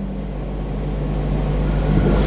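Steady low hum and rumble that slowly grows louder.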